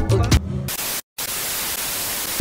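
A hip-hop beat stops about half a second in, giving way to a steady hiss of television static, a TV-static transition sound effect, which drops out completely for a moment near the middle and then carries on.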